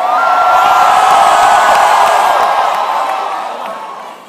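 A large crowd of voices cheering and shouting together in a big hall, swelling quickly and then fading away over a few seconds.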